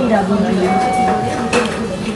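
People talking, with a short clink about one and a half seconds in.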